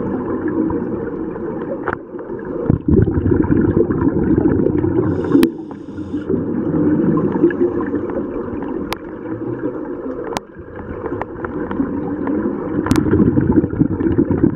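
Scuba diver's exhaled bubbles gurgling from a regulator, recorded underwater, in long bursts broken by short pauses for breath about every three to five seconds. A brief hiss comes with one pause, and there are a few sharp clicks.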